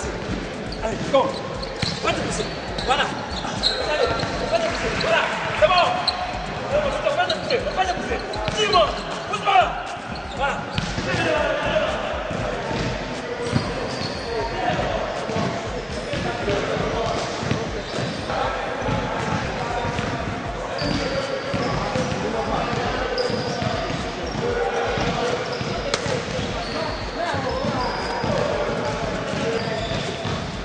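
Basketballs bouncing on a wooden gym floor during drills, with voices calling out over the bouncing.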